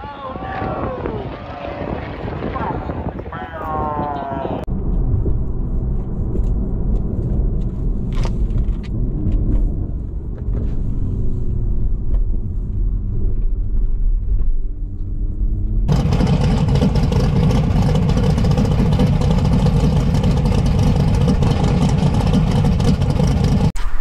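Voices for the first few seconds, then, from inside the cabin of a Toyota Supra MKV, its B58 turbocharged inline-six running and accelerating, the pitch rising. About two-thirds of the way through, the sound turns suddenly louder and fuller.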